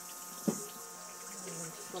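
Water running steadily with a faint hum behind it, and a single short knock about half a second in.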